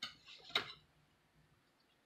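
Knife cutting melon on a metal platter: two clicks of the blade against the plate about half a second apart in the first second, the second sharper, with soft scraping between them.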